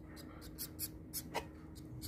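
Zebra finch nestlings begging: short, high, raspy calls repeated about five a second while a chick is fed from a stick, with one sharper click about halfway through.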